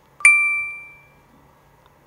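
Phone text-message chime: one bright ding about a quarter second in, ringing out and fading over about half a second.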